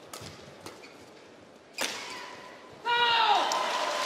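Badminton rally with light shuttle strikes, then one sharp racket crack a little under two seconds in. About a second later the crowd erupts in cheers and shouts as the point is won.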